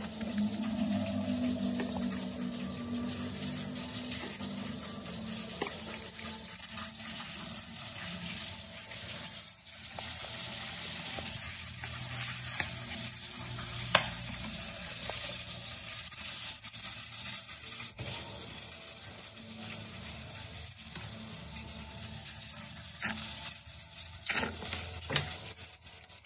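Sauces poured from bottles into a wooden mortar of pounded chili paste: a soft, steady trickling hiss, broken by a few sharp clicks, the loudest about halfway through.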